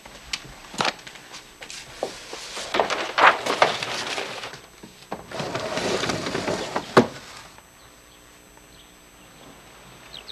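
Scattered knocks and footsteps on a wooden floor, then a rustling stretch about five seconds in and a single sharp click, after which it goes quiet.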